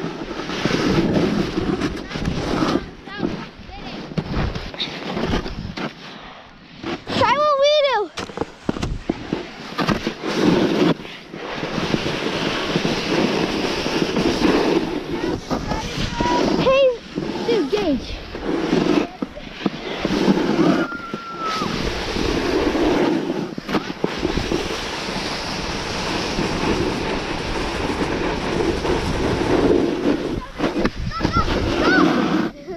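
Snowboard scraping and carving over snow during a downhill run, with wind buffeting the microphone, the loudness rising and falling with each turn. A short wavering voice-like call cuts through about a quarter of the way in.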